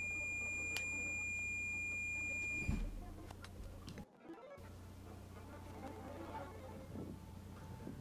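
A steady, high-pitched electronic tone over a low hum, cutting off a little under three seconds in. After a brief dropout only faint low noise remains.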